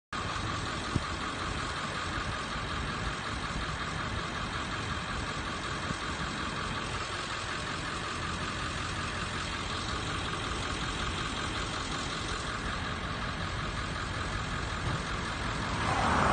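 A motor vehicle engine idling steadily, with one sharp click about a second in.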